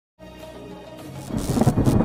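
Logo intro sting: a thunder-like rumble sound effect over faint music tones, swelling louder from about a second in.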